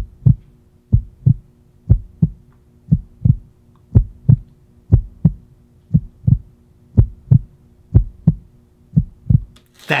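Heartbeat sound effect: a slow double thump, lub-dub, about one beat a second, over a faint steady hum.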